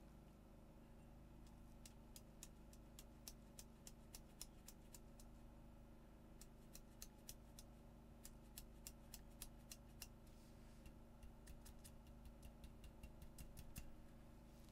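Faint light ticks, a few a second in three runs, from a small glass jar being tapped so that sulfur powder sifts out into a glass dish on a pocket scale.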